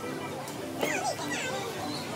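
Children's voices at play in the background, with a high sliding cry about a second in.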